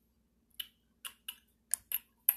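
Light, irregular clicks and taps of makeup brushes and small cosmetic containers being picked up and put down, about five in two seconds, some with a short bright ring.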